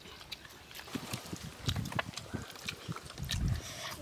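A person biting and chewing cooked quail meat off the bone, with small wet clicks and smacks and two louder, low muffled sounds, one a little under two seconds in and one near the end.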